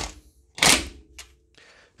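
Cordless DeWalt 20V XR impact driver run in two short bursts, the second about half a second in, driving in the small 5 mm hex screw that holds the brake rotor to the wheel hub. A brief click follows about a second in.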